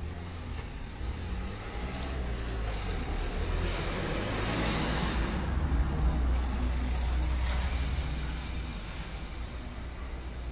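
A motor vehicle passing on the street: a low engine rumble that builds to its loudest about halfway through, then fades.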